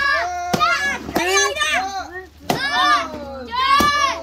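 A wooden stick striking a paper piñata, four sharp knocks at uneven spacing, with children shouting and cheering in high voices over them.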